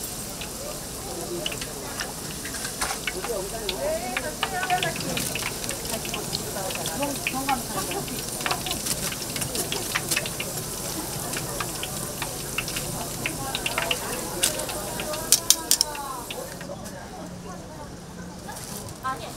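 Fish cakes deep-frying in hot oil: a steady sizzle full of small crackling pops. Near the end come a few sharp metal clicks as the fish cakes are lifted out with tongs and a wire strainer, then the sizzle drops away.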